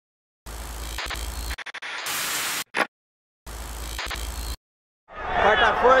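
Bursts of electronic static hiss that cut in and out abruptly, with a brief stutter and a short blip partway through, like a glitch-style sound effect. Near the end a man's voice begins over crowd noise.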